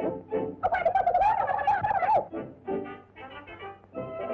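Early-1930s cartoon soundtrack music: a wavering, bird-like held note from about half a second in to just past two seconds, then a run of short, choppy notes.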